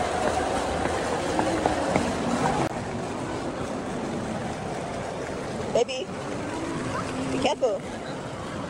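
Steady rush of an indoor fountain's water jets splashing into the basin, under a background of voices. Two short voice sounds rise out of it near the end.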